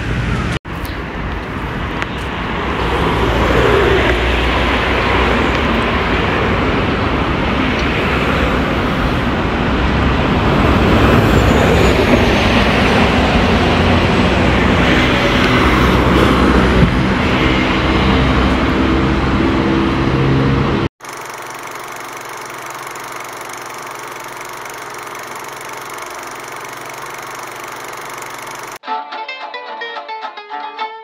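Loud, steady city street traffic noise with a deep rumble, heard outdoors at street level, cut off suddenly about two-thirds of the way through. A quieter steady hum follows, and near the end guitar and string music starts.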